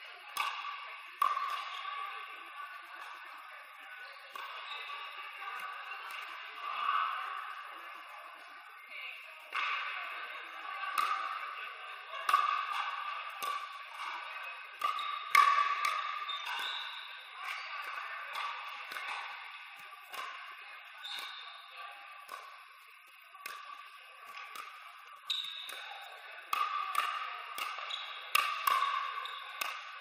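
Pickleball paddles striking a hard plastic outdoor ball in rallies: a sharp, irregular series of pocks, sometimes several a second, with short gaps between points. Each hit rings on with echo from a large indoor hall.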